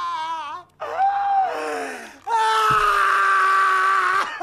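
A person screaming: three long, drawn-out cries, the last one held steadily for nearly two seconds.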